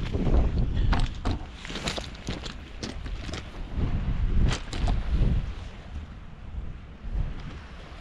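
Wind buffeting the camera microphone in a low, uneven rumble, with scattered clicks and rustles of the camera being handled and moved.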